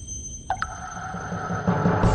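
Electronic intro music for a channel logo: steady high synthetic tones, a downward sweep about half a second in, and a low rumble that swells louder toward the end.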